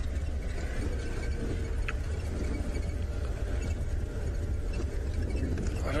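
Open safari game-drive vehicle driving slowly off-road over grass, its engine giving a steady low rumble.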